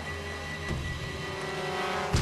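Tense background score from a TV drama: held high and middle notes over a low rumbling drone, slowly growing louder.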